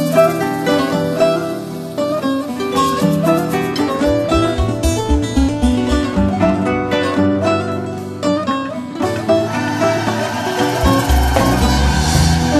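Instrumental intro of a song: a plucked string melody, with a low, steady beat joining about four seconds in.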